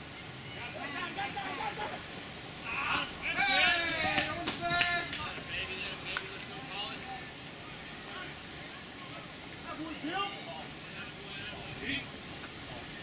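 Voices of players and onlookers calling out across a baseball field, with a burst of louder shouting about three to five seconds in, over a steady hiss.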